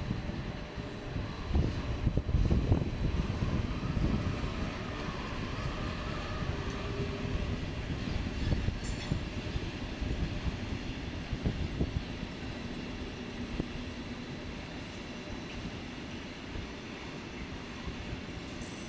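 A freight train hauled by a Siemens Vectron class 193 electric locomotive passing, its wheels and wagons rumbling over the rails. The sound is loudest and most thumping a couple of seconds in, then settles into a steadier rumble that eases slightly near the end.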